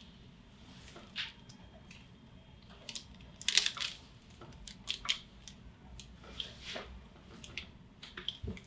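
Fingertips pressing and sliding over bare skin at the upper back and neck during chiropractic palpation: a scattering of short, soft rubbing and scratching sounds, the clearest about three and a half seconds in.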